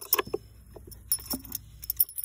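Metal washers clinking against each other in a hand: a scattered run of light, sharp metallic clinks.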